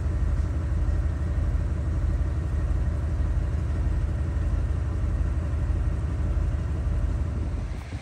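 Old motorhome's engine running steadily at a standstill, a low even hum that cuts off near the end.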